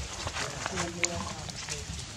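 A short vocal sound with a curving pitch about halfway through, among scattered light clicks.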